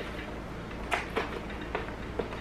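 Faint handling sounds of a bicycle tyre and inner tube being worked onto the rim by hand, with a few small clicks starting about a second in.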